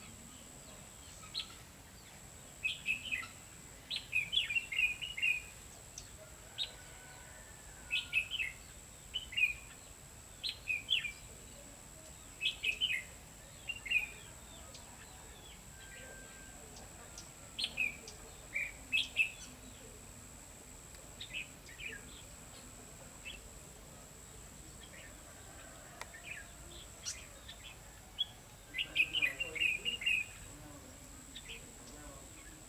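Red-whiskered bulbul singing short phrases of a few quick chirpy notes, the phrases coming every second or two, with a longer pause past the middle.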